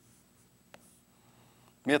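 Chalk writing on a chalkboard: faint strokes, with one sharp tap of the chalk against the board under a second in.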